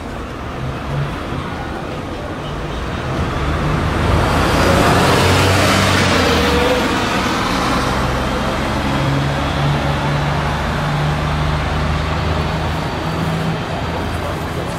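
Road traffic noise with a low steady hum, swelling as a vehicle passes about five seconds in, then settling back.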